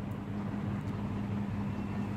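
Steady low hum with a faint even background noise: room tone.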